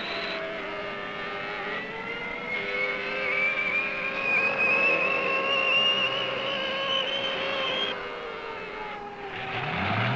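Jet turbine whine: several held tones over a rushing noise, one climbing slowly in pitch for several seconds as a turbine spools up. Near the end a lower engine note rises and then holds steady.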